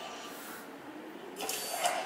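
Quiet hall tone, then about one and a half seconds in a short hissing burst lasting about half a second: a video's logo sting played over a lecture hall's speakers.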